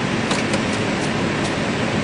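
Steady flight-deck noise of an Airbus A319 rolling out after landing, with the engines at idle and the air-conditioning hiss blended together. A few faint clicks come in the first second and a half.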